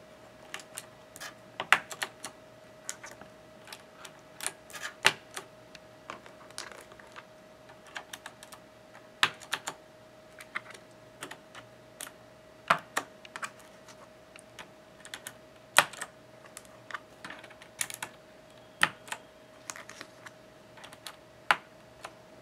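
Plastic keycaps being pushed onto the Cherry MX switch stems of a Razer BlackWidow Ultimate 2013 mechanical keyboard and pressed down to seat them: irregular sharp clicks and snaps, several a second with short pauses, over a faint steady hum.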